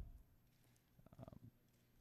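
Near silence: room tone on a desk microphone, with a faint, brief crackle of small sounds about a second in.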